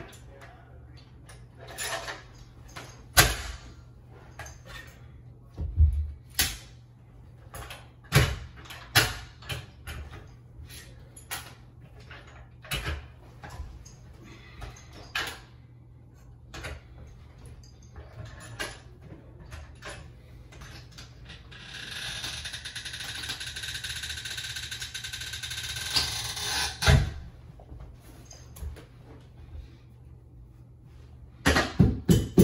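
Carpet power stretcher and hand tools being handled and set on the carpet: irregular clanks and knocks, a steady hiss lasting about five seconds near the end, then one loud knock.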